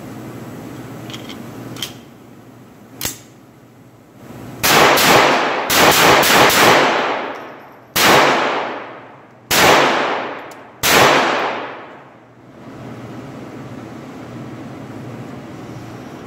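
SIG Sauer 1911-22 .22 LR pistol fired nine times: a quick pair, a fast string of four, then three single shots spaced over a second apart. Each crack rings off in the echo of an indoor range booth. Two fainter cracks come before the string.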